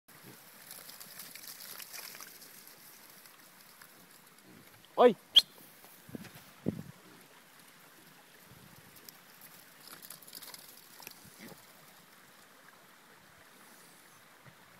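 Red Mangalitza piglets rustling through grass and giving a couple of short low grunts, with a man's single sharp shout of "Oi!" at them about five seconds in, the loudest sound.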